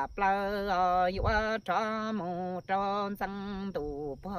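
A man's solo voice singing Hmong kwv txhiaj, the traditional chanted sung poetry. Long held notes waver in pitch, in short phrases broken by brief breaths, and one phrase bends down in pitch near the end.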